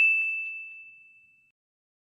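A bright single-tone notification chime, the "ding" sound effect of a subscribe-and-bell button animation, ringing out and fading away within about a second and a half. A faint click comes about a quarter second in.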